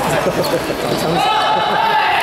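Badminton rally sounds in a sports hall: a sharp racket hit on the shuttlecock at the start, then a long high squeak from a little past halfway, over people chatting.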